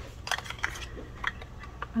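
A few faint, scattered clicks and light rubbing as small sandpaper buffing discs and their plastic holder are handled.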